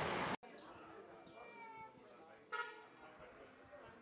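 A loud rushing noise that cuts off abruptly a moment in, then faint voices of people outdoors, with one brief, high-pitched sound about two and a half seconds in.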